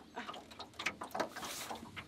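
Scattered light clicks, knocks and rustles of hands working a hooked fish on a trotline over the side of a small metal boat, the clearest knocks about a second in and just after.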